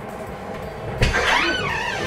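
A bathroom door opening: a sharp latch click about halfway in, then a squeaky hinge creak that slides up and down in pitch for about a second.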